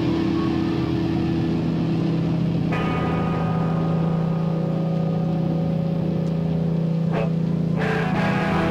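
Loud, steady amplified drone from the stage guitar rig: a low held note with overtones ringing through the amps. It is broken by sharp clicks about three seconds in and twice near the end, as the guitarist handles his amp and guitar.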